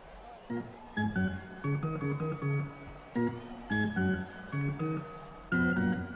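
Electric organ playing a quick melody of short notes, the kind of organ played at the ballpark between pitches, ending on a louder chord.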